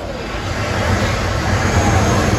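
Gas fire tower blasting a tall column of flame, a steady rush of burning gas with a low rumble that grows a little louder near the end.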